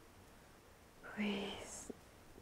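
A woman's short, strained vocal sound of distress, starting about a second in and lasting under a second.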